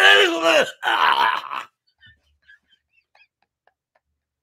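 A man laughing hard: two long, loud cries of laughter, the pitch falling through each, in the first two seconds, after which the sound drops to near silence.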